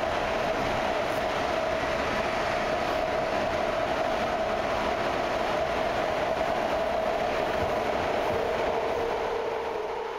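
Inside a BART train car running through a tunnel: steady, loud running noise from wheels and track with a pitched whine held throughout. A second, slightly lower whine comes in near the end.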